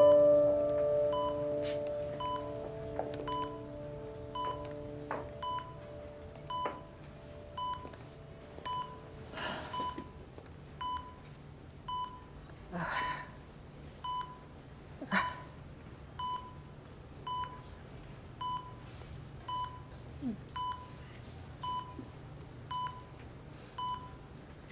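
A hospital patient monitor beeping steadily, one short high tone about once a second, the heart-rate beep at a bedside. Held music notes fade out over the first few seconds, and a few soft rustles come partway through.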